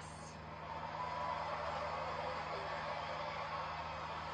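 Arena crowd noise, a steady wash of many voices, swelling slightly about half a second in.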